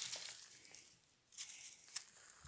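Loose soil sliding and crumbling off the tipped bed of a homemade tipping trailer, fading out, then a second shorter slide of dirt ending in a sharp knock near the end.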